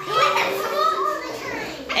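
Children's voices chattering and calling out over one another in a busy room.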